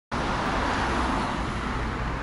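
Steady road traffic noise from cars passing on a multi-lane avenue, with a low rumble. It is picked up by an action camera's built-in microphone with wind-noise reduction switched off.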